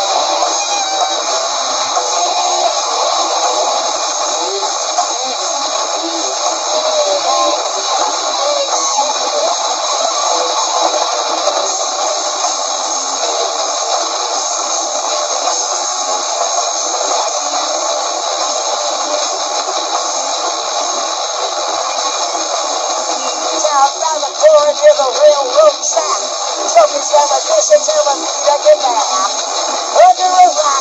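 Live noise-rock band with distorted electric guitars and drums playing a dense, droning wall of sound with held tones. About 24 seconds in it gets louder, with wavering pitched lines coming in over it.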